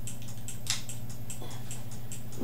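Timing relay clicking rapidly and evenly, about five clicks a second (set to switch every 0.2 s), over a steady low electrical hum from the generator rig. One sharper click comes a little before halfway.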